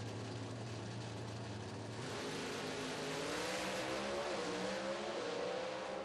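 Pro Stock drag cars' naturally aspirated V8 engines launching and accelerating hard down the track. About two seconds in, a steady drone gives way to louder running with rising pitch, which drops briefly at gear changes.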